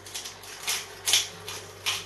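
Hand pepper grinder being twisted, grinding black peppercorns: a series of short gritty crunches, about two a second.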